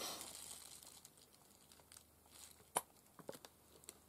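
A short crinkling rustle, then a few light clicks and taps, the sharpest about three seconds in: paint containers being picked up and handled on a craft table.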